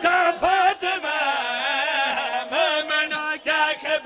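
A man chanting a melodic recitation into a microphone, his voice wavering in ornamented runs with a held note a little past the middle.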